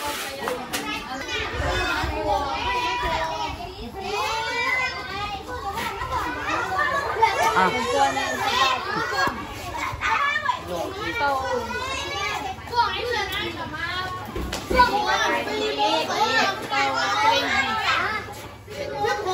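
Many schoolchildren chattering and calling out at once, a steady hubbub of overlapping young voices.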